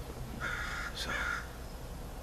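Two short, harsh cawing bird calls, the first about half a second in and the second just after one second.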